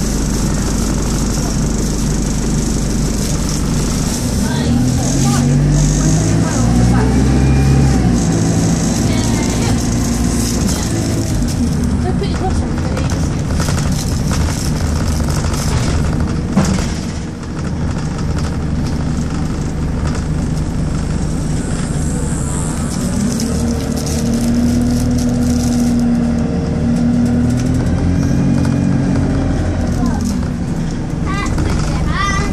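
A diesel bus engine heard from inside the passenger saloon while the bus is moving. The engine note rises and falls twice as the bus speeds up and eases off, with a brief drop in loudness about halfway through.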